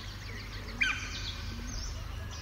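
A low, steady background hum with a short bird chirp a little before one second in and a few fainter chirps.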